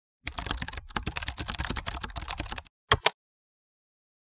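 Rapid typing on a computer keyboard: a fast, dense run of keystrokes for about two and a half seconds, then two separate clicks a moment later.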